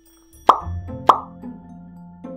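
Two quick cartoon-like 'plop' pop sound effects about half a second apart, over background music that starts just before them.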